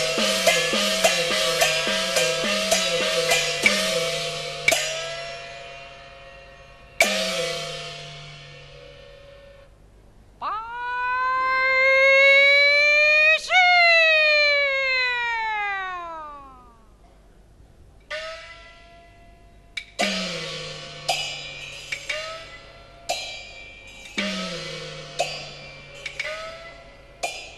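Peking opera percussion: gongs and cymbals struck in quick succession, each gong stroke bending in pitch as it rings, thinning out to single strokes. About ten seconds in, a drawn-out offstage call, 'bai jia' ('Attend to the carriage!'), rises and then falls. Near the end the gong and cymbal strokes come back, about one a second.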